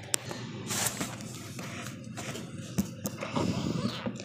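Handling noise: rustling and a few light knocks as a plastic toy doll is moved about and laid down.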